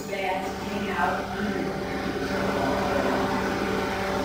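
Faint, indistinct speech from an audience member asking a question away from the microphone, over a steady low hum of room noise.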